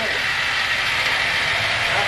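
Overhead food-delivery train running along its ceiling track: a steady mechanical running sound over the diner's background chatter.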